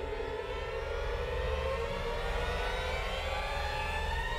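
End-card soundtrack: a steady low rumble under several tones that slowly climb in pitch through the second half, like a siren winding up.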